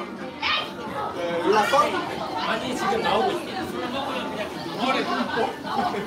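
Indistinct chatter: several people talking at once in a large indoor room.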